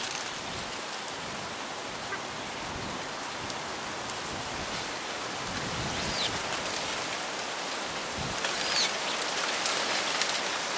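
Steady hiss of wind blowing through grass and reeds, with a low gust rumble on the microphone just after eight seconds and a few brief faint high chirps around six and nine seconds in.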